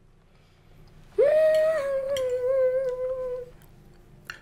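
A woman humming one long appreciative "mmm" with her mouth full while tasting a crepe. It starts about a second in, holds for a little over two seconds, and slowly falls in pitch.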